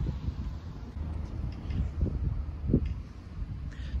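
Low, uneven rumble of wind buffeting a phone's microphone outdoors, with a couple of soft handling bumps about two seconds in as the phone is turned around.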